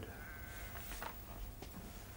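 A faint animal call early on, like a bleat in the background, followed by a few soft ticks.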